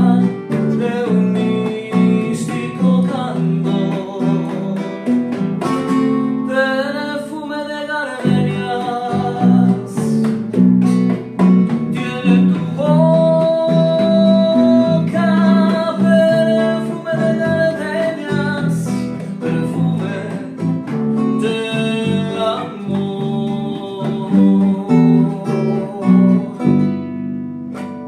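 Bolero performed live by a male singer with two acoustic guitars and an electric bass: the voice carries long held notes over plucked guitar and bass, and the song ends and fades out near the end.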